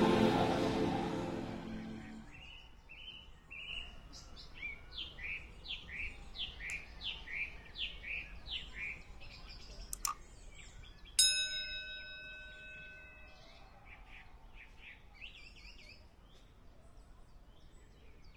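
Birds singing, a rapid series of short chirps repeated over several seconds, after background music fades out. Near the middle comes a single click, then a bright bell-like chime that rings out and fades: a subscribe-button sound effect.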